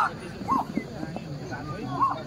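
A dog gives a short yelp about half a second in, over background voices.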